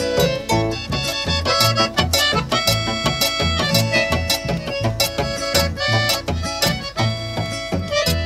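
Instrumental break in a Paraguayan folk song: an accordion melody over strummed guitars and a steady, evenly pulsed bass.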